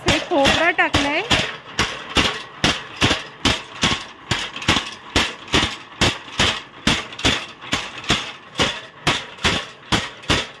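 Masala pounding machine (kandap) with iron pestles pounding spice powder in an iron bowl: a steady, even run of heavy thuds, about three a second. A voice is heard briefly near the start.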